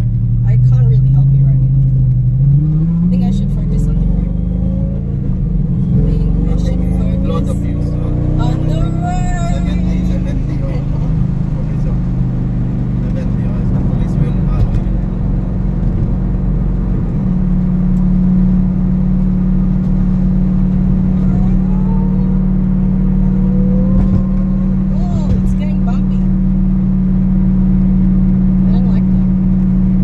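Lamborghini engine heard from inside the cabin while driving. Its pitch rises as the car accelerates two to three seconds in, then settles into a steady drone at a constant speed from about halfway on.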